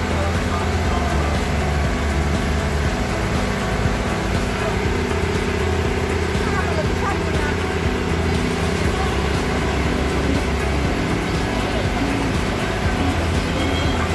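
Passenger boat's engine running steadily: a continuous low drone that carries through the whole stretch without change.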